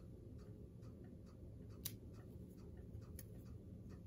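Small fly-tying scissors snipping thin-skin wing-case material to an arrow point: a few faint, sharp snips, the clearest two about a second and a half apart, in an otherwise quiet room.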